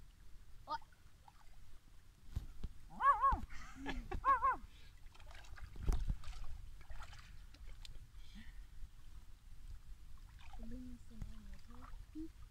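Shallow river water sloshing and splashing around people's legs and hands as a giant Wels catfish is held in the water for release, with a louder splash about six seconds in. Two short voice exclamations come a few seconds in, and low voices near the end.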